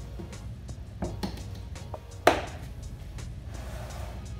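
A few light clicks of small items being handled in a storage box, then one sharp knock as the lid of the covered storage box is shut, over soft background music.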